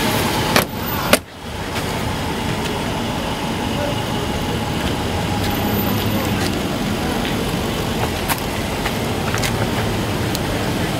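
Two sharp knocks about half a second apart, about a second in, then a car engine running steadily under traffic noise.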